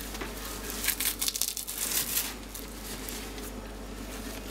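Irregular rustling and crinkling of a disposable nappy's nonwoven lining and absorbent filling being handled.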